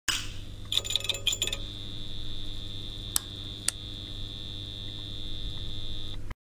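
A steady high-pitched whine over a low hum, starting about one and a half seconds in after a few crackling clicks, with two sharp clicks about three seconds in.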